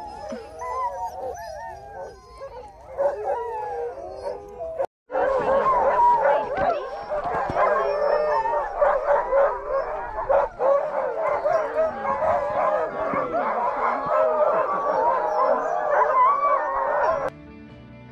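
A yard of sled dogs howling and barking together in a chorus of many overlapping wavering voices, as teams are readied for a run. There is a brief break about five seconds in, after which the chorus is louder; it stops shortly before the end.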